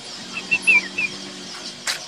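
A small bird chirping four or five short times in the first second, the last chirp sliding down in pitch, over a faint steady low hum. A brief sharp knock near the end.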